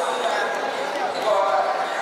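Crowd of children chattering at once in a large hall, many voices overlapping with no single speaker standing out.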